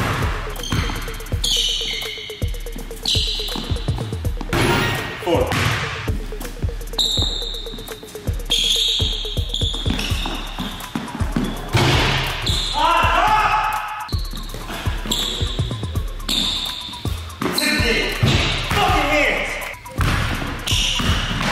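Basketball dribbled on a hardwood gym floor, a run of repeated bounces.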